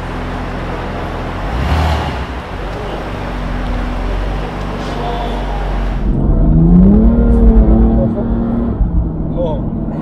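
BMW M2's engine accelerating hard from a standing start, heard inside the cabin with road noise; about six seconds in the engine note rises in pitch and gets loudest, then holds.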